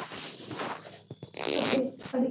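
Rustling handling noise close to the microphone, loudest in a brief hissing stretch about one and a half seconds in.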